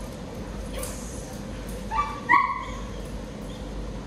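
A dog barks twice in quick succession, two short high barks about two seconds in, the second louder.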